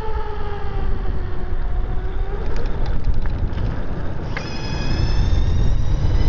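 CYC X1 Stealth 72-volt mid-drive e-bike motor whining on a ride. Its pitch falls slowly over the first two seconds or so as it eases off. A higher whine cuts in about four seconds in and edges upward as the motor pulls again, over a steady low rumble of wind and road.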